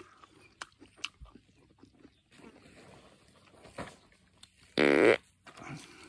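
A single loud, rasping fart about five seconds in, lasting about half a second, with faint ticks and rustles around it.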